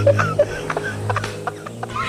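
Chickens clucking in short, scattered calls over a low steady hum, the whole fading down.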